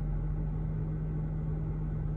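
Car engine idling, heard from inside the cabin as a steady low hum.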